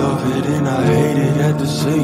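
Recorded pop song: a male voice sings a drawn-out chorus line with bending pitches over a steady, sustained low note.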